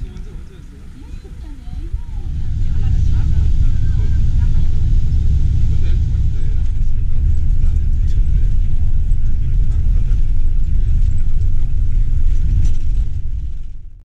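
People's voices for the first two seconds, then a loud, steady low rumble inside a moving tour coach: the bus's engine and road noise heard from the cabin, fading out at the very end.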